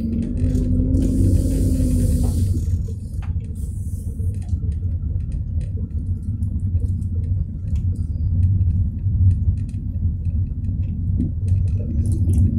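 Car driving slowly, heard from inside the cabin: a steady low rumble of engine and tyres, with a faint held tone during the first two seconds.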